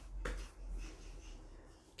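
Faint sounds of a baby crawling on a foam play mat, with one short sharp sound about a quarter of a second in, over a low steady hum.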